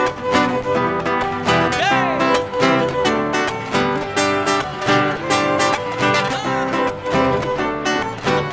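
Live band playing an instrumental break: strummed acoustic guitar keeping a steady beat over electric bass, with violin and cello.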